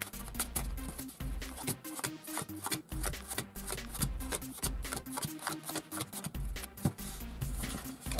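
Light background music with a repeating beat, over the soft riffling and slapping of a deck of playing cards being shuffled and dealt out.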